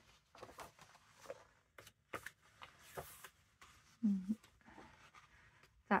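Paper pages of a large hardback book turned by hand, giving a string of short, soft rustles and flaps. A brief hum from a voice comes about four seconds in.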